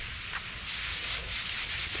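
Garden hose spray nozzle hissing steadily as its spray of water falls on grass and bare soil.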